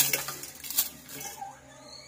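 Metal kitchen utensils clinking against dishes: a sharp clink at the start and another just before a second in.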